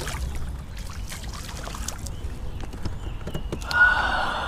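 Small knocks and handling sounds on a kayak over a low wind rumble, then near the end a loud, drawn-out groan, "ahhhhg".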